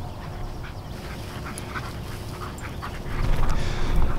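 Two dogs running up through tall grass: faint rustling and small scattered clicks over a low rumble that grows louder about three seconds in.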